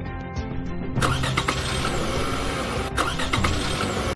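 Sound effect of a car engine starting up about a second in and driving off, over background music.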